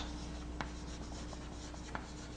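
Chalk writing on a blackboard: faint scratching with a couple of light taps of the chalk, over a low steady hum.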